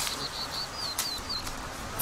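A small songbird chirping in the forest: a quick run of about seven short, high notes over a second and a half, a couple of them sliding in pitch, with a sharp click about halfway through.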